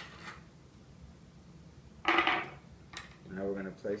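Handling noise from mounting a tennis racquet on a stringing machine's frame support: a light click, then a short, loud scrape about two seconds in, and another click. A man's voice begins near the end.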